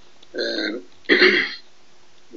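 A man's voice making two short, drawn-out vowel sounds, each about half a second long.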